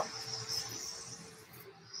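Faint room tone with a thin steady hum that fades out about one and a half seconds in.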